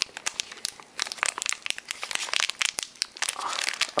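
Metallized anti-static bag crinkling in the hands as its sealing sticker is pulled open. It makes a continuous run of sharp crackles.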